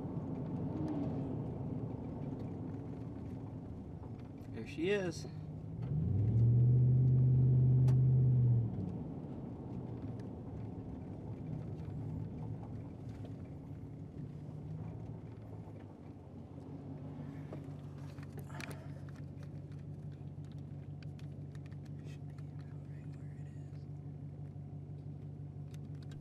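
Vehicle engine running with a steady low hum, heard from inside the cab. About six seconds in, a much louder steady low drone holds for about two and a half seconds, and just before it a brief voice is heard.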